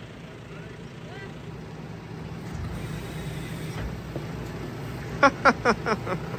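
Tractor and Teagle Tomahawk 9500 bale spreader running with a steady low hum. Near the end, a person laughs in four quick bursts.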